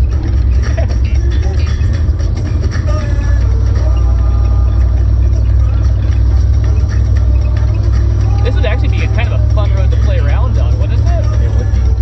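Loud, steady low rumble of wind and driving noise in an open, roof-chopped Lincoln travelling a rough dirt road, with indistinct voices over it, mostly between about two-thirds and nine-tenths of the way through.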